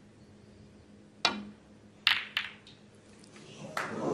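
A snooker cue tip strikes the cue ball about a second in. About a second later comes a quick cluster of sharp clicks as the cue ball hits the red pack and the balls knock into each other, with one more click near the end. The audience murmur starts to rise just as the last click sounds.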